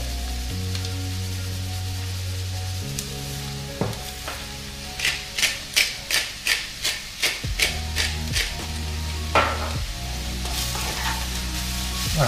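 Hand pepper mill grinding over a wok of sautéing mushrooms: a run of sharp clicks, about three a second, for a few seconds in the middle, over a faint sizzle. Background music with steady held chords plays underneath.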